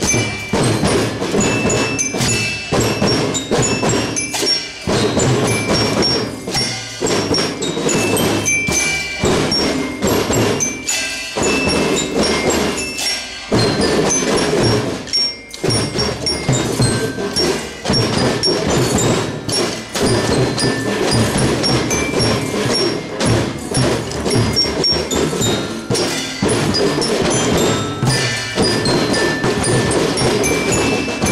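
Children's marching drum band playing: snare drums and bass drums beating a steady rhythm under a bell lyre (glockenspiel) melody, with a brief break about halfway through.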